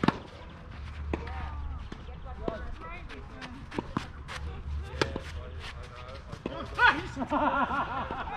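A tennis racket strikes a ball with a sharp pop right at the start, followed over the next few seconds by fainter knocks of the ball bouncing and being hit. People's voices come in near the end.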